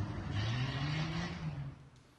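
Car engine revving up, its pitch rising then holding, fading out near the end.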